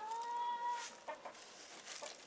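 A domestic hen giving one drawn-out, steady-pitched call lasting nearly a second, followed by a couple of faint short sounds.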